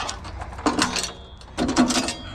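Ratchet strap being worked, its ratchet clicking in two short runs of quick clicks with light metallic clanks.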